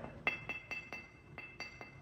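Fingers tapping the neck of a high-fired white porcelain garlic-head vase, about four quick taps a second, each giving a short, clear, high ring. The ring is very crisp, shown off as a sign of the dense, well-fired porcelain.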